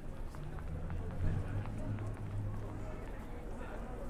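Busy pedestrian street: footsteps of passersby on the pavement and indistinct chatter, over a low steady hum that fades out shortly before the middle.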